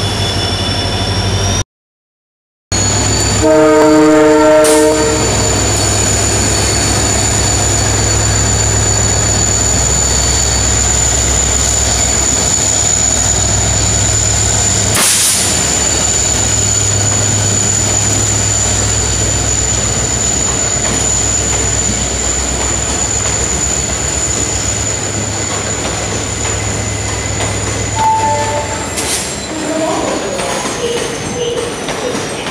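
WDG4 diesel-electric locomotive pulling a passenger train away, its engine running with a deep steady drone under a steady high whine. About three and a half seconds in, after a one-second dropout, its horn gives one short blast.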